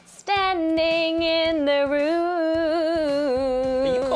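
A woman singing unaccompanied, holding one long note with vibrato that dips slightly lower partway through.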